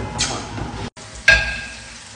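Kitchen noise at a stove. A short dead gap about a second in, then a single sharp metal clink of cookware that rings briefly and fades.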